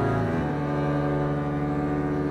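Double bass quartet bowing a low sustained chord; the notes change about a third of a second in, and the new chord is held.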